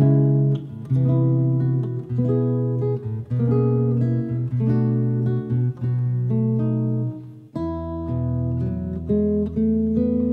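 Solo jazz guitar on a double-neck guitar, playing chords and bass notes that change about once a second. About three-quarters of the way through, the music moves into a new passage with a low held bass underneath.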